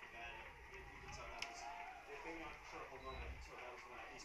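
Faint background voices of players and spectators at a ballpark, with a single brief click about one and a half seconds in.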